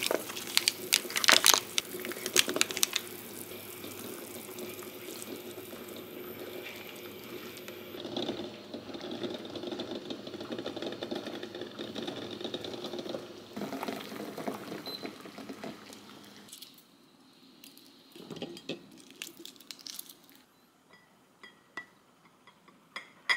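Solid curry roux blocks dropping into a steel pot of simmering onion broth with sharp plops and splashes, followed by a steady simmering hiss and the sloshing of the curry being stirred with a silicone spatula. Toward the end, the liquid sounds stop and a few light clicks and clinks of a rice paddle against ceramic bowls follow.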